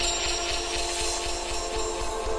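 Contemporary chamber ensemble with electronics playing a quieter passage of many steady held tones with a faint high shimmer.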